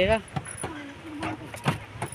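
A woman's voice ends a word at the start, then quieter talk runs on, with two short sharp clicks: one just after the start and one near the end.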